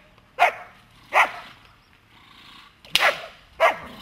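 German Shepherd Dog barking: four sharp single barks, two near the start and two close together about three seconds in.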